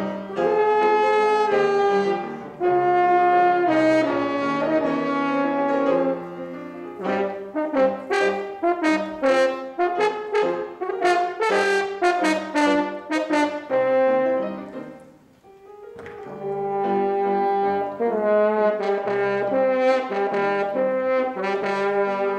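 French horn playing with piano accompaniment. Long held notes give way to a passage of quick, short, detached notes, then a brief pause about fifteen seconds in, then held notes again.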